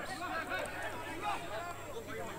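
Faint field sound at a football match: distant, indistinct voices of players and onlookers.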